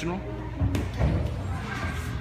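Busy gymnastics-hall background of children's voices, with two short thumps about three quarters of a second and one second in.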